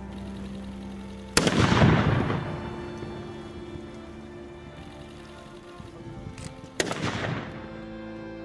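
Two matchlock musket shots about five seconds apart, each a sharp loud report with a rolling echo that dies away over about a second.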